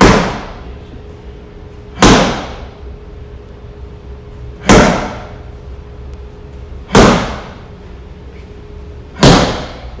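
Five punches landing on a handheld strike pad, each a sharp hit with a short echo, roughly two seconds apart.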